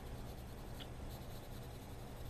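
Colored pencil scratching softly and steadily on coloring-book paper while shading, over a faint steady low hum.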